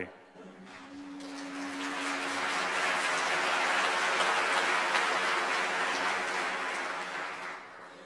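Audience applauding, swelling over the first few seconds and then dying away near the end.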